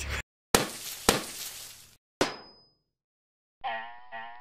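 Edited transition sound effects: two sharp hits about half a second apart, each ringing away for about a second, then a third hit with a quickly falling swoosh. Near the end a theme tune starts, a reedy melody over a beat.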